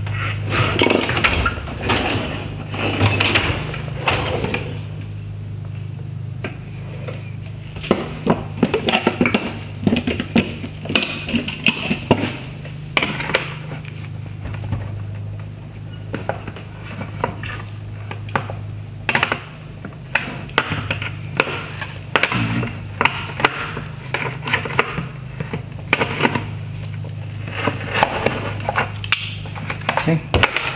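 Hard plastic of a Tesla Model 3 headlight housing clicking, knocking and creaking as a rear access cap is worked and twisted by hand, in irregular small clicks with short pauses. A steady low hum runs underneath.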